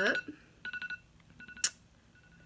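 Timer alarm beeping in quick groups of about four short, same-pitch beeps, twice, signalling that the set time is up. A single sharp click comes near the end and is the loudest sound.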